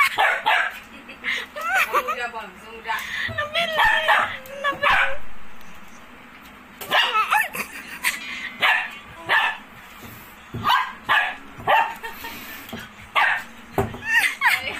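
Puppy yapping and whining in play: wavering high calls at first, then after a short lull a run of short sharp yips and barks, about one or two a second.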